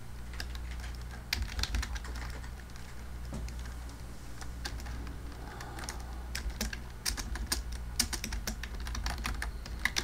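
Typing on a computer keyboard: irregular runs of key clicks, as a search term is entered.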